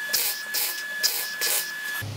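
MIG welder arc on steel running in several short bursts with brief gaps, as in stitch or tack welding. A steady high whine runs underneath, and both stop abruptly at the end.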